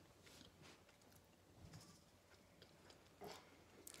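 Near silence: room tone with a few faint, short clicks, one slightly louder a little after three seconds in.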